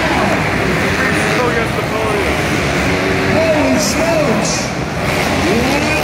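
Several dirt bike engines revving up and down as they race, their pitches rising and falling and overlapping, over a steady din of voices.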